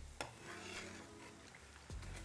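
Faint sizzling of aloo bites deep-frying in hot oil, with a single sharp click a moment in.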